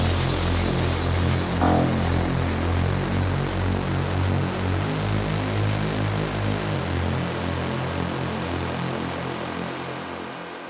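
Progressive house music in a beatless stretch: a sustained bass line under a hissing, airy noise wash, slowly fading out. The deepest bass drops out about seven seconds in.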